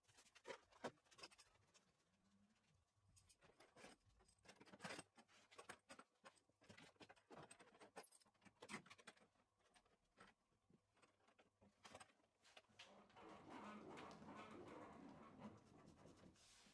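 Near silence, with faint scattered clicks and, near the end, a faint rubbing as metal hold-down clamps and a workpiece plate are handled on the CNC table's aluminium rails.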